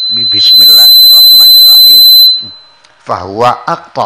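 Public-address microphone feedback: a loud, steady high-pitched tone that swells up, holds for about two seconds and dies away about halfway through, over a man's voice.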